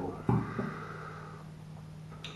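A man's short voiced sound about a quarter second in, fading out by about a second and a half, over a steady low hum.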